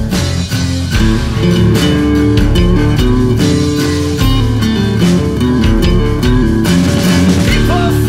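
Southern rock band playing an instrumental passage: a guitar riff over bass guitar and a steady drum beat.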